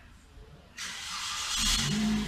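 Toyota Yaris's 1.5-litre four-cylinder engine starting up about a second in, heard at the exhaust, its note growing louder as it catches and settles toward a fast idle.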